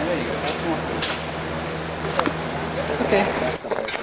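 Indistinct background voices over a steady low hum that cuts off near the end, with a few sharp clicks.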